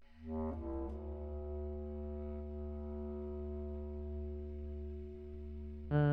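Music: a low bass clarinet note held steadily for about five seconds, after a brief change of notes in the first half second. A louder entry of several notes starts right at the end.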